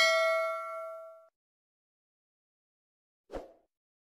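A bright notification-bell ding, as from a subscribe-button animation, ringing out and fading away over about a second. A short faint knock follows about three seconds in.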